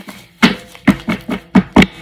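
A deck of oracle cards being shuffled by hand, giving about six sharp clacks of the cards in under two seconds. The loudest two come near the end.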